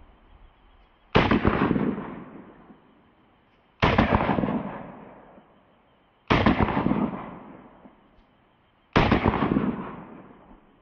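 Four shots from a 1911 pistol in .45 ACP, about two and a half seconds apart, each followed by a long fading echo.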